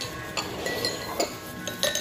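Chopsticks clinking against a small metal bowl as a raw egg is beaten in it: about half a dozen sharp, irregular clinks with a short ring, the loudest near the end.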